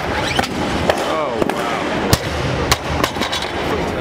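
Loaded barbell with rubber bumper plates, 140 kg, dropped from overhead after a power snatch, hitting the platform about two seconds in and bouncing, among other sharp clanks and voices.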